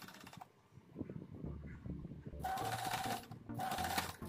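Sewing machine stitching jeans fabric in short runs: it starts about two and a half seconds in, stops briefly, then runs again. Before it, softer clicks and handling.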